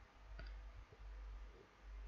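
Two faint computer mouse clicks, about half a second apart, over a low steady hum.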